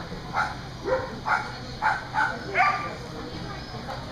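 Australian Shepherd barking about six times in quick succession while running an agility course.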